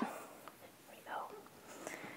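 A faint, brief voice about a second in, in a quiet room, with a light click near the end.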